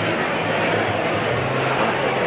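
Indoor fight-venue crowd chatter, a steady murmur of many voices, over background music with held bass notes.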